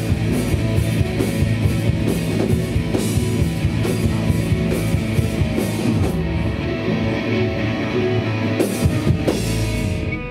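A hardcore punk band playing live: distorted electric guitars, bass and a drum kit, with no vocals. The cymbals drop out about six seconds in, a cymbal burst comes near the end, and then the band stops together.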